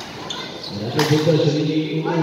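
A basketball bouncing once on the court floor about a second in, loud and sharp, with a man's voice going on around it.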